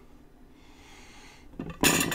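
A quiet stretch, then near the end a sudden loud burst of close-up handling noise: a clatter and rustle as grapefruit halves are handled and set down and hands move near the microphone.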